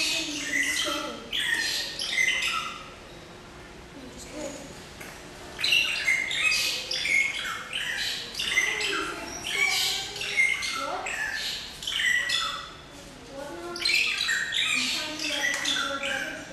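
Many short bird chirps and calls at irregular intervals, some harsher like squawks, over a background of people's voices chattering, with a quieter lull a few seconds in.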